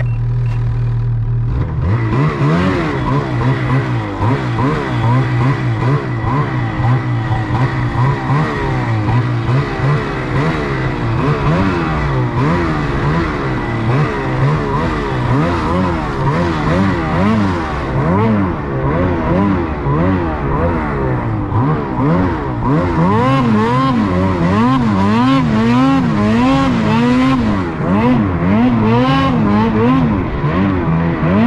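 Ski-Doo snowmobile engine held at a steady note for a couple of seconds, then revving up and down continually as the throttle is worked through deep snow. The swings in pitch come quicker and wider near the end.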